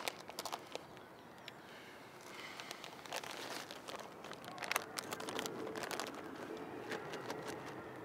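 A plastic sweet packet crinkling as a hand rummages in it for chocolate stars: a run of irregular crackles, busiest from about three to six seconds in.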